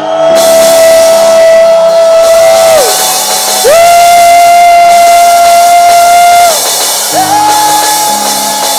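Three long shofar blasts, each held on one note that bends up as it starts and drops away at the end, over sustained low chords.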